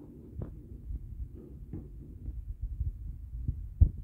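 Low thumps and rumble of a handheld phone being moved about, with a few soft knocks; the loudest, sharpest knock comes near the end.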